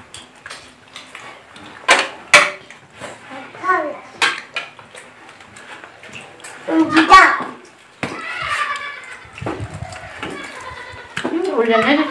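A few light clinks of a spoon against a dish during a meal, the sharpest about two seconds in, amid quiet talk and a child's voice.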